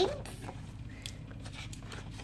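A paperback picture book being opened and its pages handled: a few faint paper taps and rustles over a low steady hum.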